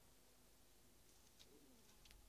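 Near silence: faint room tone, with a faint, short cooing sound about two-thirds of the way in.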